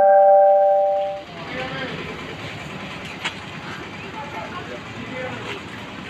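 A bell-like chime of several steady tones rings and fades out over the first second or so. After it comes street noise with faint, indistinct voices and a single short click about three seconds in.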